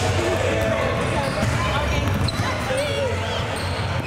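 Many basketballs being dribbled at once by a crowd of children on a hardwood gym floor, a steady overlapping clatter of bounces mixed with children's voices.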